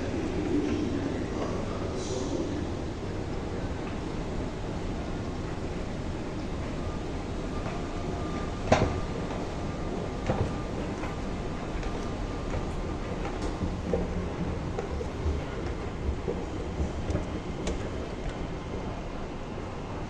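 Steady low rumble of a metro station with an escalator running, with one sharp clack about nine seconds in and a scatter of lighter knocks in the later seconds.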